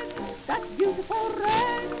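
An acoustic-era 78 rpm gramophone record from 1913 playing a ragtime song: after a held note ends, a run of short notes with quick upward swoops fills the gap between sung lines.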